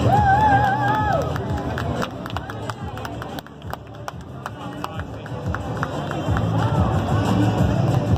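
Parade music and crowd chatter. A wavering tone sounds for about the first second, followed by a run of sharp clicks through the middle.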